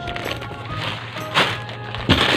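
Soft background music with a rustle of plastic food packets, loudest about one and a half seconds in, as a hand shifts packs of instant noodles and macaroni in a cardboard box.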